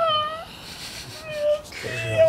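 A man's high-pitched, squeaky laugh: a short, slightly rising squeal at the start and a second, shorter one about a second and a half in.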